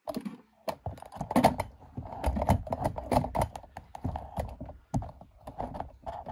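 Irregular rustling, tapping and clicking of hands handling things on a workbench: a fabric work glove being pulled off and a spiral-bound notebook being moved and its pages turned.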